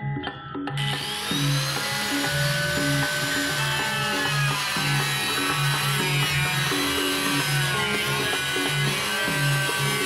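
Background music with a steady beat, and about a second in a MODERN angle grinder starts running under it, its whine rising and wavering as the disc cuts into a plastic water-dispenser jug.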